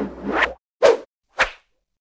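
Swoosh sound effects for an animated title: one longer whoosh at the start, then two short, sharp swishes just under a second in and about a second and a half in.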